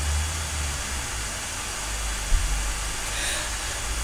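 Steady low rumble with an even hiss underneath, and one brief soft knock a little past halfway.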